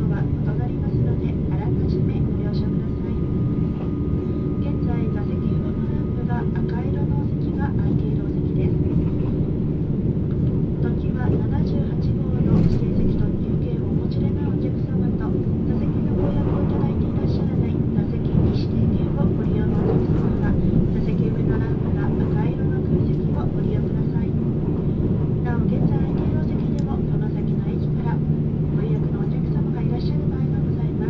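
Cabin noise of a JR East E657-series electric train running at speed: a steady low rumble of wheels and running gear on the rails that holds an even level throughout.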